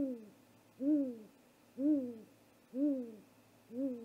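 Great gray owl giving a slow series of deep, evenly spaced hoots, about one a second, five in all. Each hoot rises slightly and then falls in pitch.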